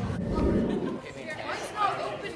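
Several people's voices chattering at once, with a low rumble in the first half second.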